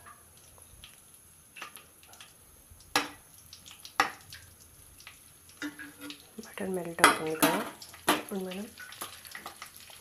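Metal utensils clanking against a kadai a few times, sharp single knocks about three and four seconds in and a cluster near the end, over a faint sizzle of butter melting in hot oil. A person talks through the second half.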